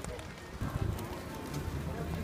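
Outdoor ambience of a busy paved plaza: faint distant voices over a low rumble of wind and movement.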